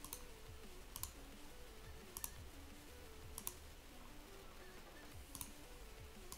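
Computer mouse clicking: a handful of sharp clicks, some in quick pairs, spaced a second or two apart.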